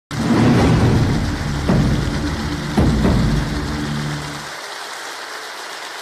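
Studio audience applauding over a short burst of show music. The music stops about four and a half seconds in, and the applause carries on, quieter.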